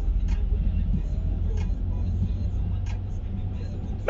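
Steady low rumble of a car heard from inside the cabin, with three faint clicks spread through it.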